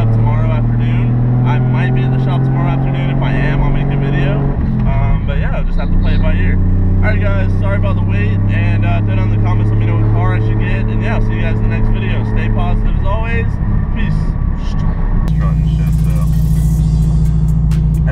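A car's engine drones in the cabin while driving, its pitch slowly rising, dropping about four and a half seconds in, then rising again, with a man talking over it. About fifteen seconds in it gives way to music with a steady beat.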